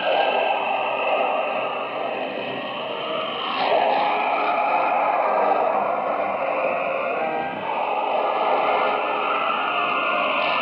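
Shortwave AM radio reception dominated by loud, hissing static and fading noise, with the station's music faint beneath it.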